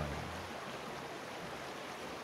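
Creek water rushing steadily over rocks.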